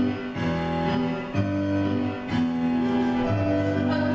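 Instrumental music with sustained chords and a bass line, changing about once a second.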